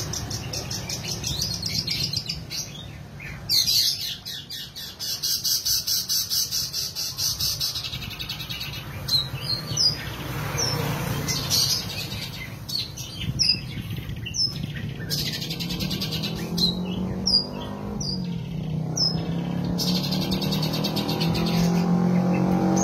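Long-tailed shrike (cendet) singing its mimicked repertoire: a fast, high rattling trill, then a string of short, sharp, downward-slurred whistled notes.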